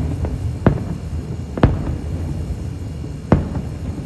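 Aerial firework shells bursting: three sharp booms, roughly one to two seconds apart, with a fainter pop just before the first, over a low continuous rumble.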